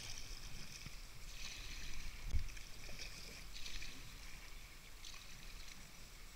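Kayak paddle strokes in calm sea water: a splash and drip from the blade every second or so, over a low rumble, with a single dull knock about two seconds in.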